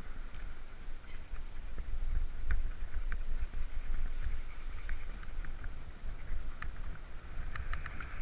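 Riding a mountain bike: wind rumbling on the camera microphone over the rolling noise of tyres on a dirt and paved path, with scattered light clicks and rattles.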